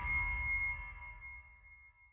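End-card music fading out: a high ringing tone lingers over a dying low bass and dies away about a second and a half in.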